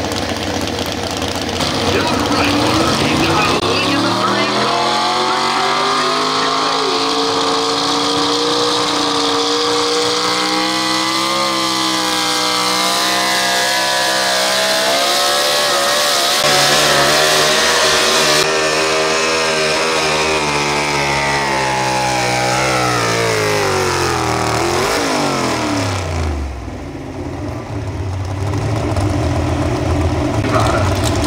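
Pro stock 4x4 pulling truck's engine revving up hard as the truck starts its pull and holding at high revs, with the pitch wavering, while it drags the weight sled down the track. Near the end the revs fall off steeply and the engine drops back toward idle as the pull ends.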